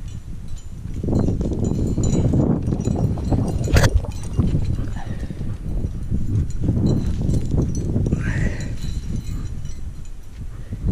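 Rubbing and scuffing of a body-mounted camera moving with a climber jamming up a granite finger crack, as tape-gloved hands and clipped gear shift against the rock. The sound comes in uneven swells, with one sharp click about four seconds in.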